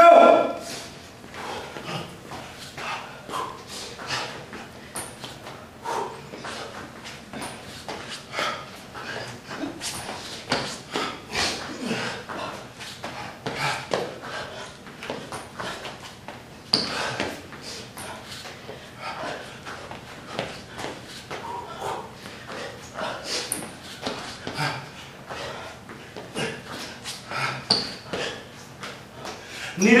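A person exercising on a hard gym floor: irregular taps and thumps of feet and hands, with breaths and faint voice sounds in between.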